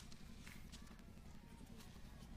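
Near silence: a faint steady low hum with a few faint, irregular clicks.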